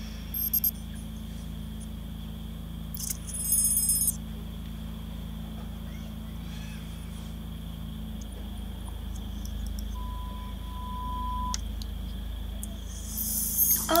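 The quiet opening of a music video playing from a computer: a few short high-pitched sound effects near the start and about three seconds in, and a steady beep lasting over a second about ten seconds in, over a constant low electrical hum.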